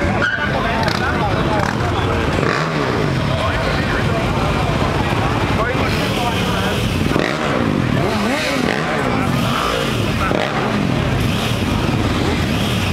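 Sportbike engine revved up and down repeatedly at the drag strip start line, in quick rising and falling blips that come more often in the second half.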